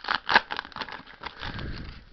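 The foil wrapper of a Pokémon booster pack crinkling and crackling in the hands as the cards are slid out of the torn pack, with a sharper crackle about a third of a second in.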